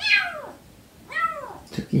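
Siamese kitten meowing twice, each call high and sliding down in pitch, the second about a second after the first. A short, low human vocal sound comes in near the end.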